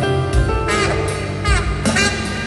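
Live tenor saxophone solo over plucked upright bass, the saxophone sliding down in pitch twice, with low thumps on the beat.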